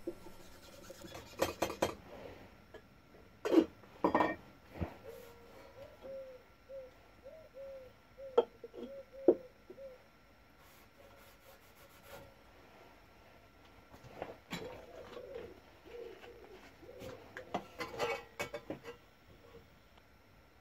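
Steel plate and a small bottle being handled on a wooden workbench: scattered light clinks and knocks of metal on wood and metal, with a rag rubbing on the steel while marking-out blue is put on. A run of faint squeaks comes in the middle.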